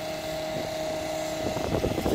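Steady machine hum with a constant tone. Toward the end there is the rustle of the phone being handled.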